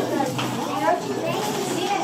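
Indistinct chatter: several voices talking over one another in a room, none clearly in the foreground.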